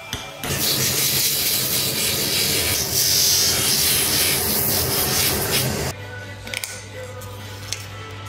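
Leather edge pressed against the spinning wheel of a DWT bench grinder: a loud rasping grind, with the motor humming underneath, lasting about five seconds and then stopping suddenly. Background music plays throughout.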